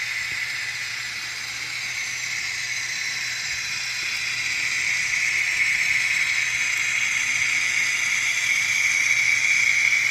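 N-scale model train running on the track: a steady high whirring hiss from the locomotive's motor and the wheels on the rails, getting louder about halfway through as the train comes closer.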